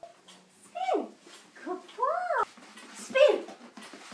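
A woman's voice in three short, high, sing-song exclamations, the excited tone used to cue and praise a dog.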